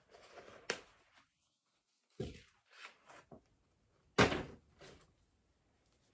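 Fabric and paper price tags rustling as a new pyjama set is handled and unpacked, with a click under a second in. Two dull thumps follow, about two seconds apart, the second the loudest.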